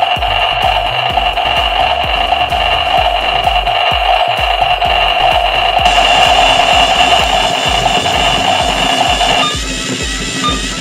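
Toy slime blender running its timed spin cycle with a steady, high-pitched two-tone hum that sounds like a tornado, cutting off suddenly about half a second before the end. Background music with a steady beat plays throughout.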